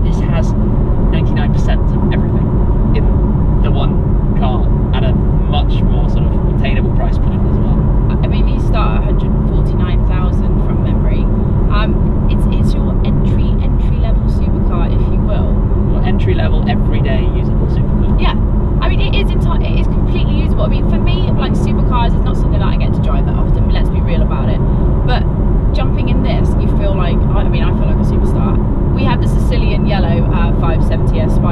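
Steady in-cabin drive noise of a McLaren 570S Spider cruising with the roof up: its twin-turbo 3.8-litre V8 and road noise as an even low rumble, with two people talking over it.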